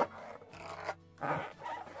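Small black latex balloon being handled and twisted by hand, the rubber squeaking and rubbing in a few short bursts.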